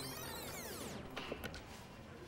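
Recorded footage being rewound for replay: a warbling, sweeping whine of sped-up playback that stops about a second in, followed by a couple of faint clicks.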